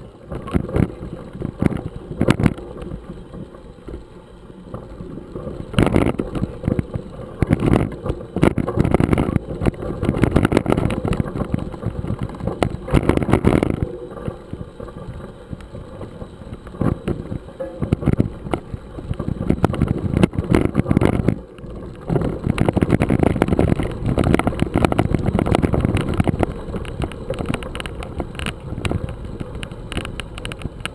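Mountain bike rolling over a loose gravel road: tyres crunching on stones and the handlebar-mounted camera jolting and rattling with every bump, in irregular knocks over a steady low rumble.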